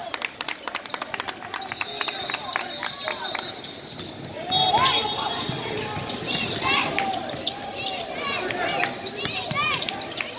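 A basketball being dribbled on a hardwood gym floor, with repeated sharp bounces, and sneakers squeaking in short high chirps as players cut and stop. Voices of players and spectators carry through the hall.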